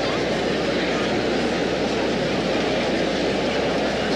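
Steady crowd noise filling an ice arena.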